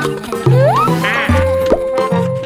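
Cartoon sound effects over bouncy background music: a rising whistle-like glide, then a short wobbly buzzing warble, then a held tone with a brief pop.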